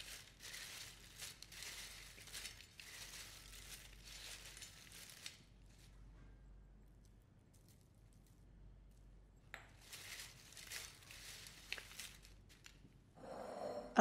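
Faint crackling rustle of crisp oven-toasted bread strips being tossed by gloved hands on a metal plate. It goes on for about five seconds, eases off, then comes back for a few seconds near the end.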